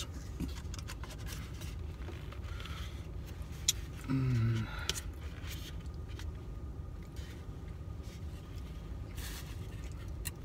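A styrofoam cup being handled, with a sharp click and a scrape, over a low steady rumble inside a car's cabin. A short hum of a voice about four seconds in.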